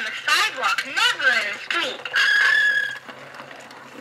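A 1994 Mattel Safe 'N Sound See 'N Say toy playing back its recorded voice phrase, followed about two seconds in by a steady high squealing tone lasting about a second.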